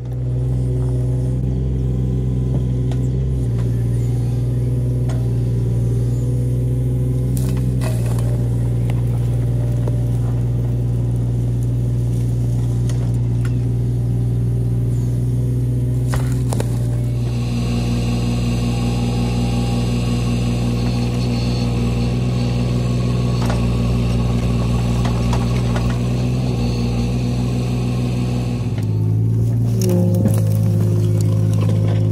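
Mini excavator's diesel engine running steadily under load while it digs a narrow slit trench. Its note changes several times as the hydraulics work the arm and bucket. A higher steady whine joins in from about halfway until near the end.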